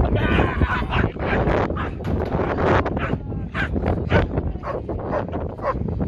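A young black shepherd dog, five and a half months old, barking rapidly and repeatedly at a helper during protection training, about three barks a second.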